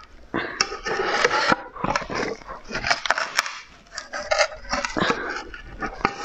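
A soft rubber mould being pulled and peeled off a moulded block by hand: continuous irregular rubbing, squeaking and crackling with many sharp clicks. The mould is sticking and hard to get off.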